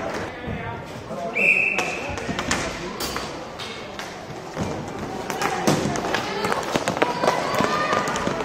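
Inline hockey rink during a youth game: sharp clicks and knocks of sticks, puck and skates on the plastic floor, with voices calling out and a short high whistle about a second and a half in.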